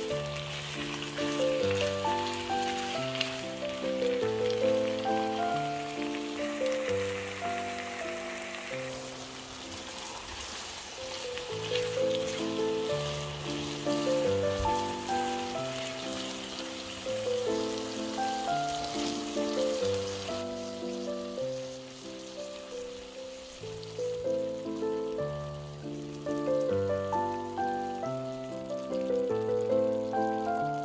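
Pork chunks and sliced onion sizzling in oil in a frying pan, a steady hiss that grows quieter about two-thirds of the way through, under background music of slow melodic notes.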